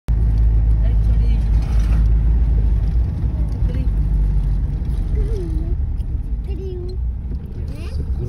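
Low, steady rumble of a car's engine and tyres heard from inside the moving cabin, louder for the first three seconds. A few brief faint voices come in the second half.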